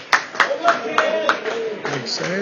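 A spectator's hands clapping close to the microphone, five sharp claps at about three a second, over the chatter of other spectators.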